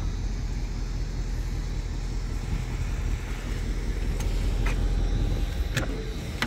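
The Mustang GT's 5.0-litre V8 idles steadily with a low, even rumble. Near the end come a couple of sharp clicks as the door is unlatched and swung open.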